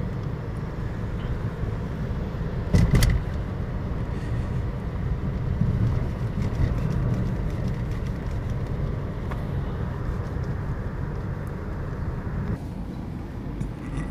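Steady engine and tyre noise heard inside a moving car's cabin on a highway, with one brief thump about three seconds in.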